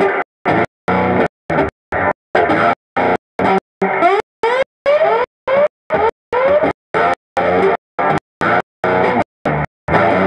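Fretless electric guitar played through an analog delay (echo machine) into an amp, a blues line with notes sliding up in pitch. The sound cuts out completely for a split second over and over, about two to three times a second.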